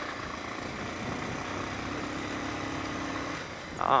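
Small dirt bike's engine running steadily while it is ridden along the road, with a faint steady hum.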